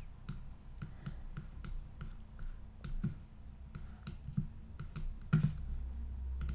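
A run of light, irregularly spaced clicks, a dozen or more over several seconds, from a computer mouse and keyboard being worked while painting with a brush tool, over a low steady hum.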